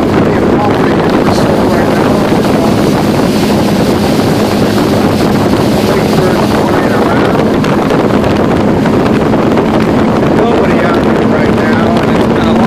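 Motorboat engine running steadily underway, a constant drone with one held pitch, mixed with wind buffeting the microphone.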